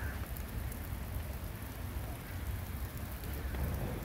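Steady rain falling on wet stone paving, an even hiss with a steady low rumble underneath.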